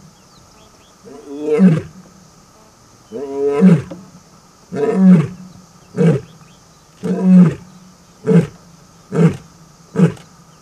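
African lioness roaring in a bout: long, loud, full-throated roars about every second and a half, then shorter calls coming faster, winding down into the closing grunts over the last few seconds.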